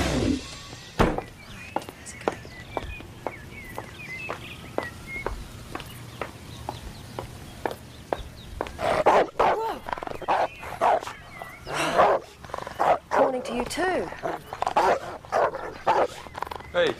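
A dog barking loudly and repeatedly from about halfway through. Before it come a sharp knock and a run of faint, even ticks about two a second.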